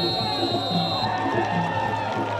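Background music with a steady beat. Over it, a football referee's whistle gives a long high blast for about the first second: the full-time whistle.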